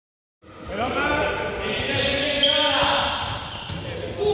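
Small rubber balls bouncing and thudding on a sports hall floor, starting about half a second in, with the hall's echo around them. Several young people's voices call out at the same time.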